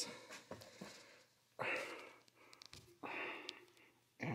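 Faint breathing: two short breathy exhales about a second and a half apart, with a few light clicks from handling the metal brake master cylinder.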